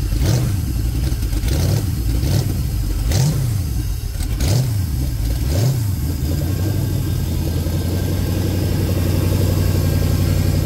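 GM LS V8 on an engine run stand, running through short open upright exhaust pipes: about six quick throttle blips in the first six seconds, then it settles into a steady idle.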